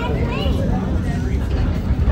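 Steady low rumble of a moving excursion train heard from inside a passenger coach, with indistinct passenger voices over it.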